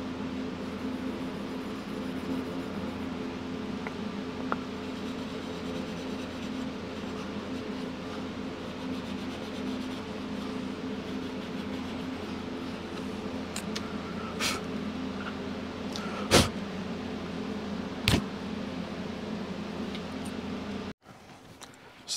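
0000 steel wool rubbing on a chrome tachometer housing over a steady low hum, with three sharp knocks in the second half. The sound cuts off suddenly about a second before the end.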